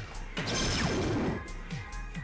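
PHOENIX electronic dartboard's hit sound effect for a triple: a loud crashing sweep with a falling tone, lasting about a second, starting just under half a second in. Background music with a steady beat plays underneath.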